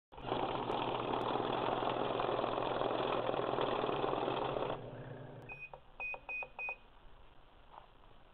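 A loud, steady rushing noise over a low hum that cuts off suddenly about five seconds in, followed by four short, high electronic beeps in quick succession.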